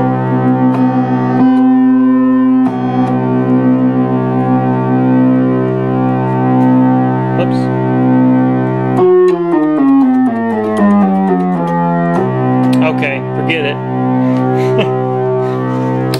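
Moog Source analog synthesizer holding a sustained note with a slowly pulsing tone. About nine seconds in the pitch steps downward over roughly three seconds, then jumps back to the held note.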